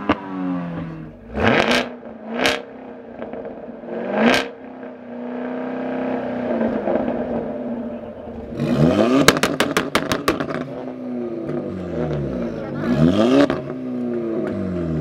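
Performance car engines revving through their exhausts, several sharp blips rising and falling back, with a rapid string of exhaust pops and cracks about nine to ten seconds in.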